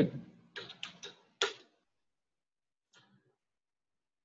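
A few short clicks from the metal four-jaw lathe chuck and its key being handled while the bowl is centred, the sharpest about a second and a half in, then one faint click about three seconds in; near silence between.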